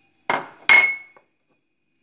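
A metal spoon knocks twice against a glass bowl, the second knock louder and ringing briefly.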